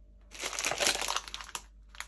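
Plastic packet of dark chocolate chips crinkling as it is handled, a dense rustle lasting about a second.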